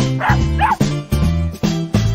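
Upbeat background music with a steady beat, over which a cartoon dog sound effect gives two short, high yips in quick succession early on.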